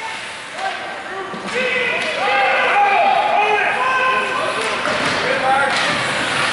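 Hockey spectators shouting and calling out together, many voices overlapping, which swell about a second and a half in. There is a sharp knock near the end.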